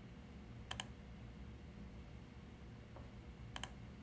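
Two computer mouse clicks, each a quick double tick of button press and release, about a second in and near the end, over a faint low hum.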